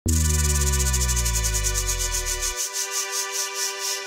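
Intro of an electronic funky DJ remix: deep bass tones glide down in pitch and cut off about two and a half seconds in, under a sustained synth chord. Above them a fast, hissing, rhythmic pulse gradually slows.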